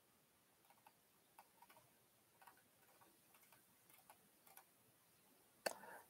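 Near silence with faint, scattered clicks from a computer being worked, a slightly louder click near the end.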